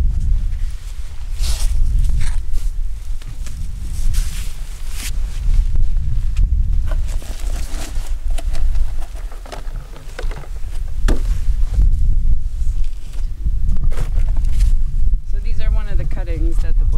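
Wind buffeting the microphone in a heavy, fluttering low rumble, with intermittent scuffs and rustles of boots and gloved hands working in sand and beach grass.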